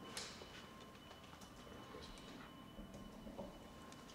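Near silence: quiet room tone with a faint steady high whine and a few soft clicks, the clearest just after the start.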